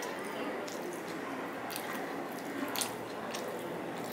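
A man chewing a mouthful of rice and fish curry with his mouth open: wet squishing and smacking with several sharp clicks, the loudest about three seconds in.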